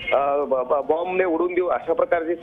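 A man speaking continuously, his voice cut off above about 4 kHz as over a narrow-band line.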